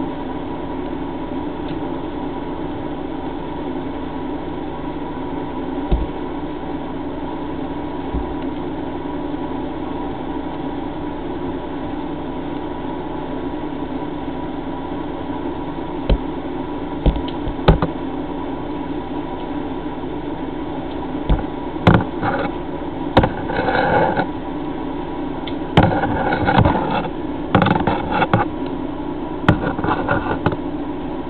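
A steady machine hum runs throughout. Scattered sharp knocks begin about halfway through, and a run of louder, rougher bursts follows near the end.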